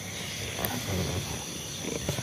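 A man's low, rough, animal-like growl, strongest about a second in, from a man acting as if possessed.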